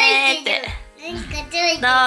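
Singing in a high, child-like voice, in long held notes with a downward slide in pitch about halfway through.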